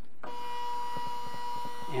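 Zebra 220Xi III Plus thermal label printer running its media calibration, the feed motor starting about a quarter second in with a steady whine as it drives the non-standard label stock past the gap sensor.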